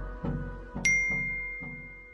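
A bright notification-bell ding sound effect, struck once about a second in and ringing out slowly, over electronic intro music with a beat about twice a second.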